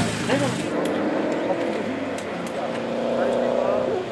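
Škoda Octavia Cup race car engine idling steadily, with a slight dip in pitch midway.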